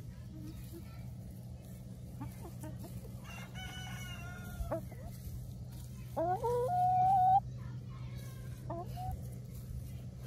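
A rooster crows once, loudly, about six seconds in: a rising start that settles into a held note. Around it, chickens give a few short clucks and, earlier, a fainter drawn-out call, over a steady low hum.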